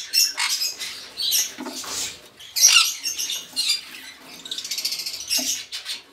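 Small parrots chattering and squawking in quick, harsh, high-pitched bursts.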